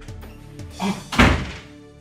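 A door banging once, a single heavy thump about a second in, with a shorter, smaller sound just before it. Background film music plays steadily throughout.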